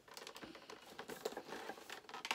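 Fingernails picking and scratching at a cardboard advent calendar door: a faint, irregular run of small clicks and scrapes.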